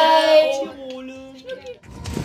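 Several women's voices singing together in a toast, loud at first and then trailing off to near quiet just before the end.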